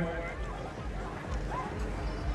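Polo ponies' hooves thudding irregularly on packed snow, with faint crowd voices behind.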